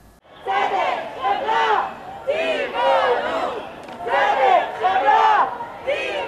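Crowd of marchers chanting a slogan in unison in Hebrew, 'Justice! Compassion! Veganism!' (tzedek, chemla, tivonut), the phrase repeated about three times.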